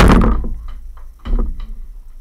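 A loud sudden thud as a ball strikes the indoor mini basketball hoop, with a short ringing decay. A second, softer thud comes just over a second later, with a few light taps between.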